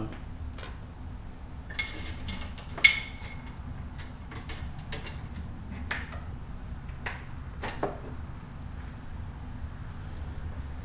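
Motorcycle roller chain and small steel front sprocket clinking as the sprocket is slid onto the countershaft and the chain worked over its teeth: scattered light metallic clicks and taps, with a short ringing ping about a second in and the loudest clink near three seconds.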